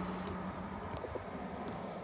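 Steady outdoor background rumble with a low hum that stops about half a second in.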